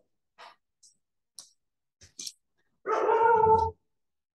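A pet dog barks once, a single drawn-out bark lasting nearly a second about three seconds in, after a few faint short clicks.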